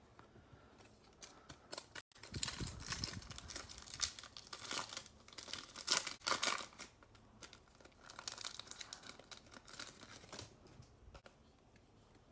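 A trading-card pack's plastic wrapper being torn open and crinkled by hand, in a dense run of crackling rustles that dies away about two seconds before the end.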